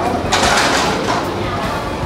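A person sucking in air and slurping while biting into a juicy egg-wrapped pan-fried bun, one breathy burst about half a second in, then chewing over a steady low room hum.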